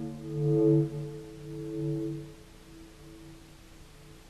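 A hammered metal hand gong ringing with a low, humming tone that swells and fades in slow waves, dying away about two and a half seconds in.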